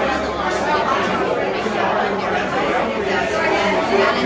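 Many people talking at once in a crowded room: a steady hubbub of overlapping conversation in which no single voice stands out.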